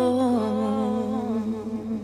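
A woman's voice holding a hummed note at the end of a sung phrase. It steps down slightly in pitch about half a second in, then holds and slowly fades.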